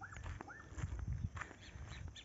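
Footsteps on a dirt road, with a few faint, short arching calls from an animal.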